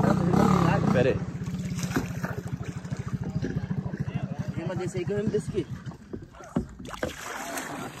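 A small boat motor running with a fast, steady low pulse, which weakens about six and a half seconds in. Brief voices come over it at the start and around five seconds in.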